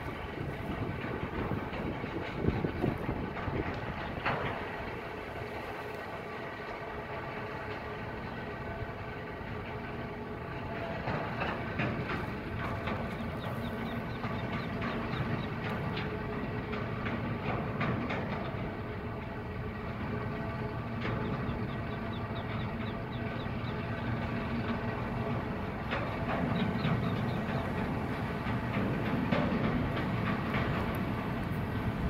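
A steady mechanical rumble with a hum of several held tones, continuous throughout. Short high chirps come and go over it in the middle and near the end.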